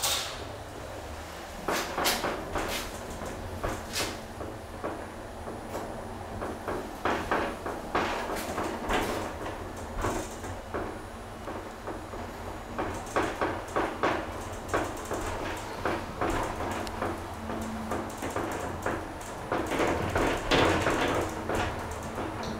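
Funicular car running up its inclined track, heard from inside: a steady low hum under irregular clicks, knocks and rattles.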